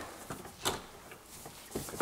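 A few light clicks and knocks as a Toyota Corolla clutch master cylinder and its pushrod are handled and fitted onto the clevis held in a bench vice. The clearest knock comes about a third of the way in.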